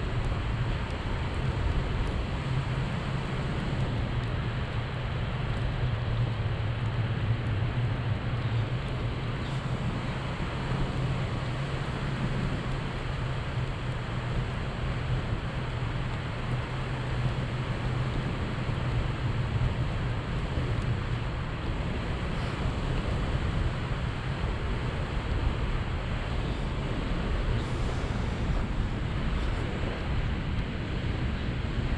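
Steady wind rushing over the camera microphone in flight under a tandem paraglider, a constant noisy roar with a low rumble.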